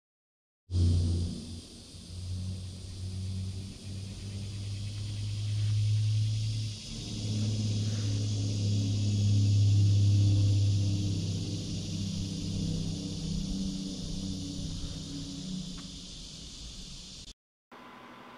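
Outdoor woodland ambience: a steady high buzzing of insects, under a louder low rumble that swells and fades, dipping briefly about seven seconds in.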